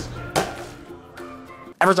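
Short musical sting for a title card: a sharp hit about a third of a second in, then a few faint held notes, and near the end voices break in with a chanted 'ever'.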